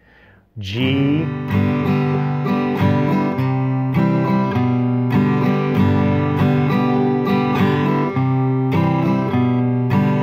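Steel-string acoustic guitar strumming, starting on a G chord, with evenly repeated strums and single bass notes picked between the chords as the bass line steps down.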